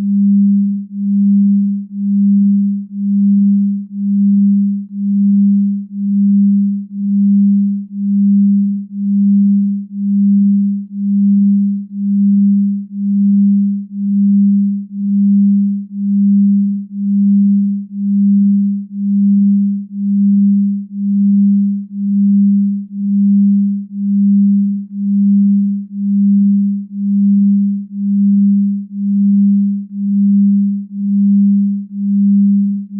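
Binaural-beat brainwave tone: a single pure tone near 200 Hz that swells and fades evenly about once a second, a slow beat in the delta-wave range used for deep sleep.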